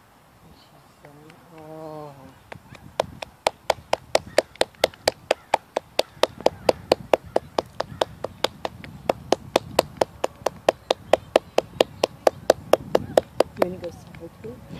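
A person clapping steadily close by, about three to four claps a second, for about ten seconds. It is preceded by a brief hum from a person's voice.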